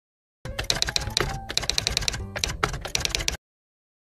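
Rapid keyboard typing: a fast, uneven run of keystroke clicks for about three seconds that stops suddenly.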